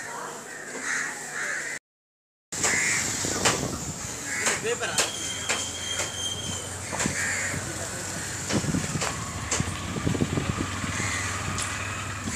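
Crows cawing several times over background voices and scattered knocks. The sound cuts out completely for a moment about two seconds in.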